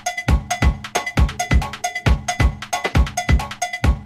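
Electronic dance music mixed from DJ decks: a steady four-on-the-floor kick drum at a little over two beats a second, with a pitched, cowbell-like percussion hit repeating between the kicks and ticking hi-hats above.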